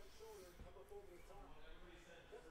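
Near silence with a faint, indistinct voice talking in the background.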